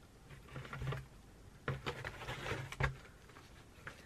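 Rustling and crinkling of a parcel's packaging being handled and opened by hand, in two short stretches with a couple of sharp clicks.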